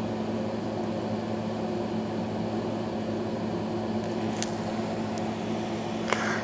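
A steady low machine hum with a constant low drone, with one faint tick about four and a half seconds in.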